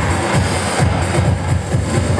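Funk tune played live on an electric keyboard through a keyboard amplifier: a steadily pulsing bass line under chords.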